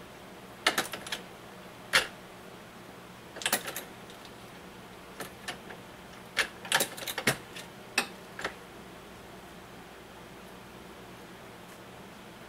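MEC 600 Jr. shotshell press worked by hand to load a 3-inch 20 gauge slug shell: a series of sharp metal clicks and clacks in small clusters, the last about eight and a half seconds in.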